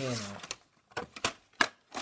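A quick series of sharp plastic clicks and knocks, about five in a second and a half, from a VHS tape and its case being handled.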